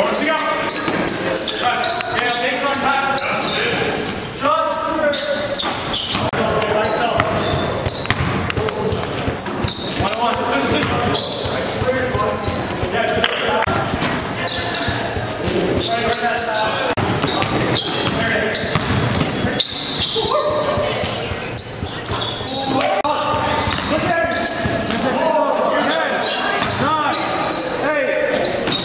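Live court sound of an indoor basketball game: players' voices calling out over repeated ball bounces, echoing in a large gym hall.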